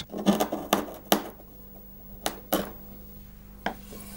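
Hand-pushed steel chisel paring the end of a wooden brace bar, cutting a notch into its tip: about six short, sharp cutting strokes, three close together in the first second or so and the rest spaced further apart.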